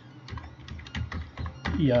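Typing on a computer keyboard: a quick run of keystroke clicks, starting about a third of a second in.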